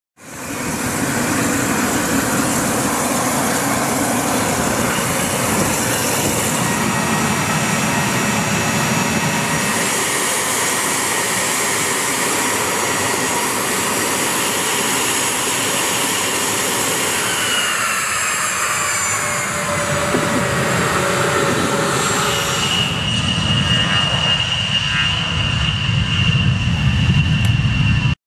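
A-10 Thunderbolt II's TF34 turbofan jet engines running on the flight line: a loud, steady rush with high whining tones. About two-thirds of the way through, some tones slide in pitch, and near the end a steady high whine rises over a deeper rumble.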